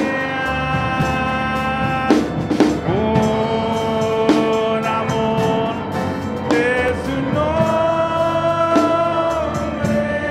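Live worship music: a man sings a Spanish-language worship song into a microphone, holding long notes, over a band with scattered drum hits.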